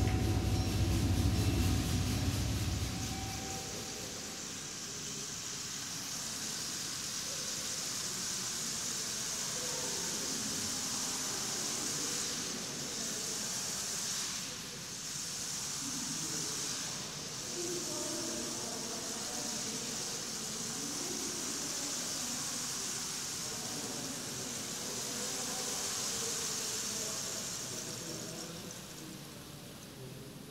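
A live ensemble's low sustained chord cuts off about three seconds in, giving way to a steady hissing texture with faint scattered tones beneath it, which fades near the end.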